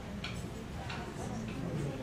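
Room noise in a large hall during a pause in a speech, with a few faint clicks spread across it and a faint trace of voice near the end.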